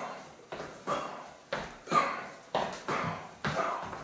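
A man throwing elbow strikes into the air while stepping in, with a sharp puff of breath and a shuffle of feet on each strike: about eight short, sharp sounds that fall in quick pairs about a second apart.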